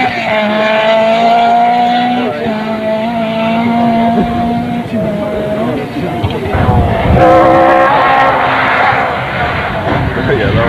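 Rally car engine revving hard as the car drives away, its note climbing and dropping at a couple of gear changes. Near the end a second rally car's engine comes in louder as it approaches.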